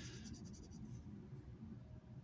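A coin scratching the coating off a scratch-off lottery ticket: a soft, fast rasping that stops about a second in.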